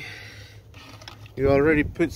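A person speaking briefly in the second half. Before that there is only faint, steady background noise.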